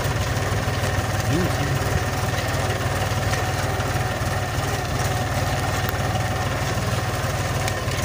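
Tractor diesel engine running steadily while pulling a disc harrow through the soil, unstrained by the load.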